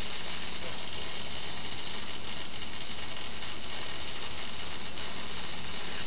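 MIG (GMAW) welding arc running steadily on thin aluminum sheet while a horizontal fillet weld is laid along a T-joint: an even, unbroken hiss at constant level.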